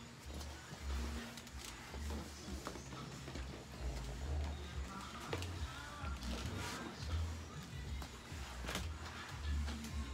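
Spray mop's flat microfibre pad swishing over a hard laminate floor, with irregular low bumps and a few clicks from the handheld phone being moved. Faint background music runs underneath.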